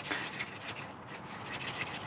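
Faint, irregular scratching and rubbing with small clicks: hands handling basket strainer drain parts at a stainless steel sink.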